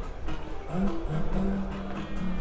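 Live juju band music playing over a steady low bass, with pitched melody lines that bend and slide.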